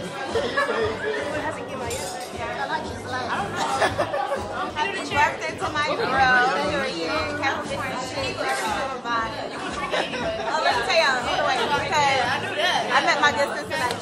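Indistinct chatter: several people talking over one another in a room.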